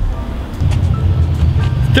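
Steady low rumble of road traffic, swelling about half a second in, under background music.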